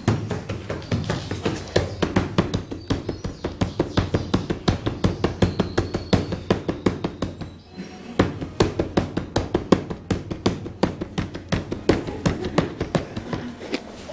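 Rapid, fairly even drumming, about five sharp strikes a second, with a short pause about eight seconds in.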